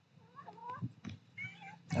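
Domestic cat meowing faintly twice, short rising-and-falling calls.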